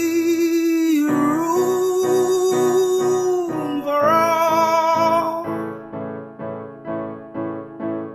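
A man singing long held notes over evenly repeated chords on an electric stage keyboard with a piano sound, about two to three chords a second. The voice stops about five seconds in, leaving the keyboard chords alone.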